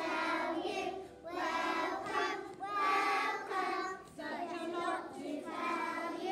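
A group of young children singing together, in phrases broken by short pauses about a second in and about four seconds in.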